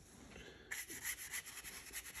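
Paintbrush scrubbing green paint onto corrugated cardboard: a faint, quick run of short rubbing strokes that starts a little under a second in.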